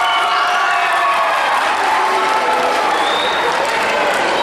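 Audience applauding and cheering, with voices shouting over steady clapping.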